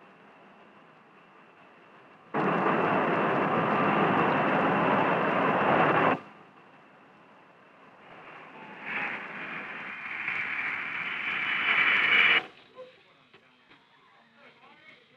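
A loud, steady rushing noise that starts and stops abruptly. Then the jet engines of a Convair B-58 Hustler on landing approach, growing louder with a high whine, cut off suddenly near the end.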